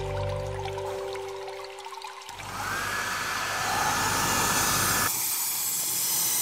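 Logo-sting sound design: held music notes that fade out over the first two seconds, then a loud, water-like rushing whoosh that swells in, with a tone that rises and holds until about five seconds in.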